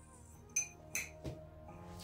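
Three light, sharp metallic clinks about half a second apart from a hybrid yo-yo with aluminium rims as it is caught off a finger spin and handled, over quiet background music.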